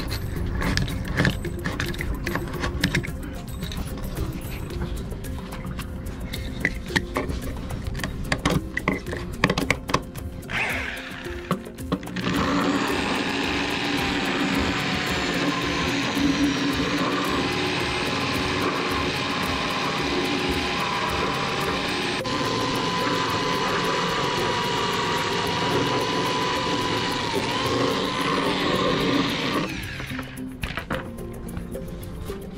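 A utility knife blade scraping and cutting at a fiberglass cockpit sole in short irregular strokes. About twelve seconds in, a drill fitted with a die-grinder bit starts abruptly and runs steadily for most of the rest, its whine rising and dipping as it grinds a bevel into the fiberglass.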